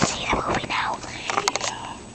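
A child whispering close to the microphone, with a few sharp clicks from the camera being handled about one and a half seconds in.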